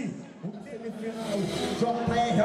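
A man's voice over background music.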